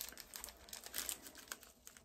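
Faint crinkling of plastic packaging with irregular small clicks, as small bags of diamond-painting drills are handled.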